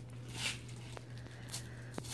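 Faint rustle of gift wrapping paper being handled, with a couple of soft taps, over a low steady hum.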